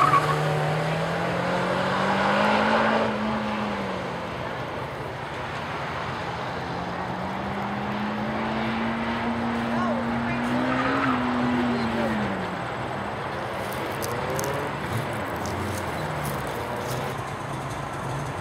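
Honda S2000's four-cylinder engine under hard acceleration on a cone course, its note rising for about three seconds and then dropping off. A second, longer pull rises from about seven seconds and falls away around twelve seconds.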